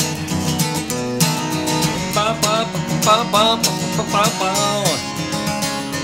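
Steel-string acoustic guitar strummed and picked in a country style, an instrumental passage with a short melodic lick of bending notes in the middle.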